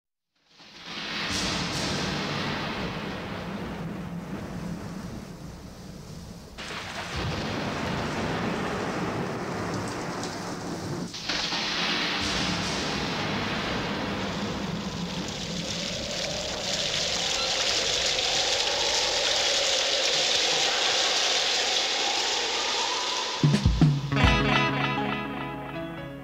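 Studio rainstorm sound effect opening a 1971 soul record: a steady hiss of heavy rain with low rolling thunder in the first several seconds. Faint wavering tones rise over the rain in the latter half, and the band's music comes in just at the end.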